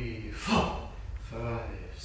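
A man's breathing and voice: a sharp audible breath about half a second in, then a short voiced sound a little past one second.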